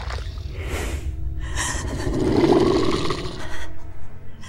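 Horror film soundtrack: a steady low rumbling drone, with a louder rough rushing sound swelling up in the middle and fading near the end.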